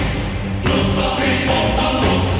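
Stage music with choir-like singing held in long notes over a steady low bass; the chord changes about half a second in.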